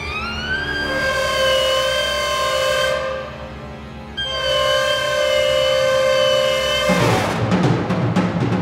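Orchestral music with solo clarinet: a rising glide settles into held high tones, which drop away about three seconds in and come back a second later. Near the end, heavy percussion strikes that sound like timpani come in.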